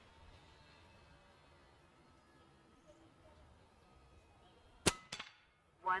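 A single shot from a silenced Evanix Rex Ibex .22 pre-charged pneumatic air rifle near the end: one sharp crack, followed a moment later by a fainter second knock.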